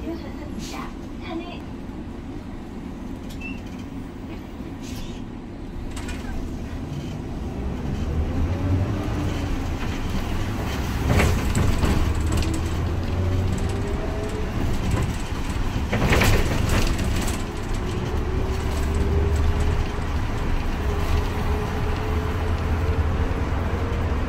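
Inside a city town bus pulling away and gathering speed: the low engine rumble grows louder partway through, with a faint whine that slowly rises in pitch as the bus speeds up. Two short loud rattles come partway through.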